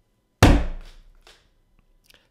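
A single sudden thunk about half a second in, such as a knock against the desk or microphone, fading within half a second, followed by a couple of faint taps.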